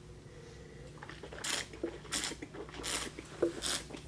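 Red wine being slurped: air drawn through a mouthful of wine in four short noisy draws from about a second and a half in, to aerate it for tasting.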